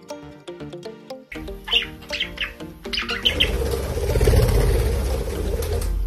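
Budgerigar chirping several times, short bright calls about two to three seconds in, after light plucked background music. Then a loud, even rushing noise with a low rumble takes over to the end.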